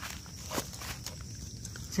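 Dry leaf litter crackling under shoes as a person shifts their feet, a few sharp crackles at the start and around half a second and a second in, over the steady chirring of crickets.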